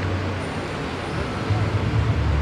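Steady outdoor background noise: a low rumble under an even hiss, with faint voices.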